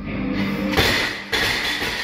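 A loaded barbell with rubber bumper plates dropped from overhead onto the lifting platform: a thud about three-quarters of a second in, then a second noisy clatter about half a second later as it settles, over background music with guitar.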